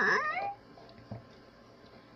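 A short meow-like cry, about half a second long, at the very start, with a pitch that slides. After it, a faint tap.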